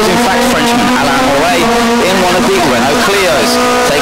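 Renault Clio rally car's engine revving at high rpm as it is driven hard through a stage, its pitch rising and falling with the throttle and gear changes, with a voice over it.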